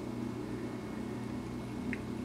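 A steady low background hum: room tone with no speech.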